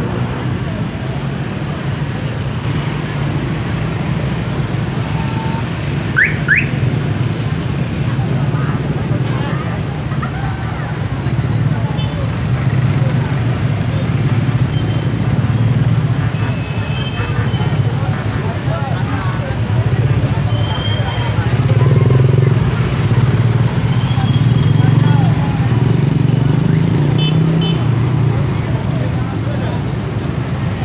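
Slow street traffic of motor scooters and cars: a steady engine hum with a crowd's chatter over it. Two short rising chirps come about six seconds in.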